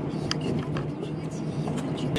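Steady engine and road hum inside an Opel Corsa's cabin while driving, with scattered light clicks.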